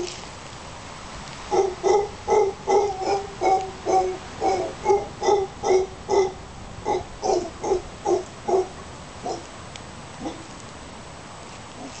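Mantled howler monkey calling: a rapid series of short calls, about three a second, starting about a second and a half in, then a few spaced-out calls before they stop.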